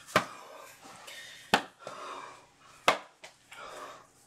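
Three sharp taps about a second and a half apart, with soft rustling between.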